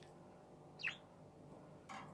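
Budgerigar giving a single short chirp just under a second in.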